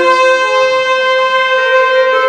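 School jazz band's horn section holding one long, steady note in a six-eight Latin jazz tune.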